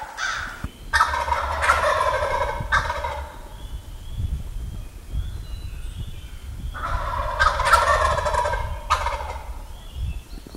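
Male wild turkey gobbling twice, each a long, rapid warbling gobble, about a second in and again near seven seconds.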